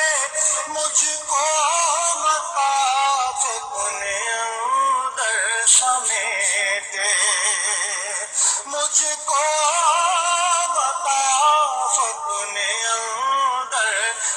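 Background music: a sung Urdu naat, one voice holding long, wavering, ornamented notes.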